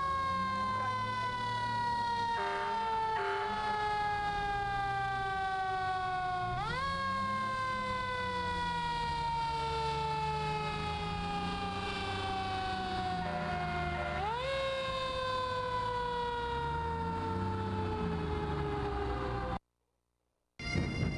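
Vintage Seagrave fire engine's mechanical siren wound up three times: each time it rises quickly to a high wail and then slowly winds down in pitch, over the truck's low engine rumble. The sound cuts off abruptly near the end.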